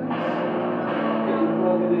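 Live doom-metal music: a heavily effected electric guitar chord struck at the start and left to ring out in a loud, sustained, bell-like drone.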